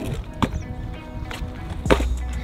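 Background music over a few sharp clacks of a stunt scooter on asphalt, the loudest just before the end as the rider pops into a trick.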